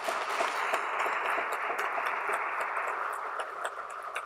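Audience applauding: many hands clapping steadily, easing off slightly near the end.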